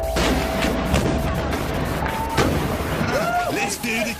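A few sudden booms and bangs mixed with short bursts of voices that carry no clear words, over a faint music bed.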